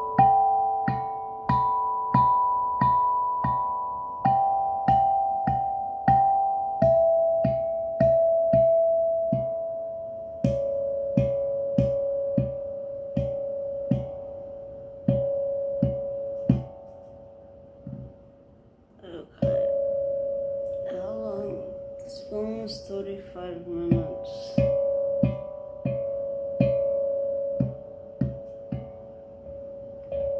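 A 6-inch, 11-note steel tongue drum in D major, struck with a rubber mallet in a slow, even beat of under two strikes a second, each note ringing and fading. The notes step down in pitch over the first ten seconds, then one note is repeated. The playing stops briefly a little past halfway and then starts again.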